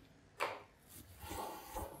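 Desk phone handset set down in its cradle with a sharp clack about half a second in, followed by faint handling and rustling noises at the desk.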